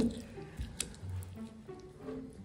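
Stone pestle mashing chopped onion and chili in a volcanic-stone molcajete, a soft wet squish with one sharp click of stone on stone about a second in, under faint background music.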